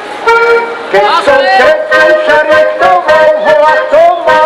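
Heligonka, a Slovak diatonic button accordion, playing a lively folk tune with chords in a steady rhythm, and a voice singing along.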